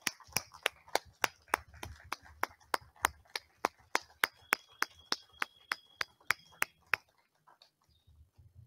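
One person's hands clapping steadily close to a microphone, about three claps a second, stopping about seven seconds in.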